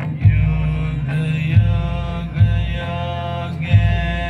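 Devotional Shiva music played over the light and sound show's loudspeakers: a chanted mantra over sustained instrumental tones, with deep drum hits about once a second.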